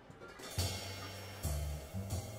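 Live jazz quartet coming in about half a second in: upright bass notes under drum kit hits and ringing cymbals, with a second accent near the end.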